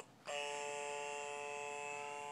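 Electronic baby toy playing music: a short note ends, then one long, steady electronic note starts about a third of a second in and holds.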